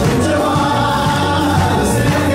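Live gospel worship music: many voices singing together over steady instrumental backing with a low bass line.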